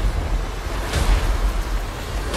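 Trailer sound design: a dense, noisy rumble with heavy bass, swelling briefly about a second in.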